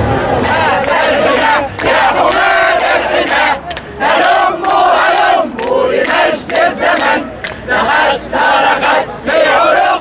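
A crowd of men and women chanting slogans together, loud, in short shouted phrases with brief breaks between them.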